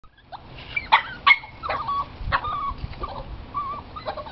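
A run of short animal calls: sharp yips or squawks with the two loudest about a second in, and short wavering chirps through the rest.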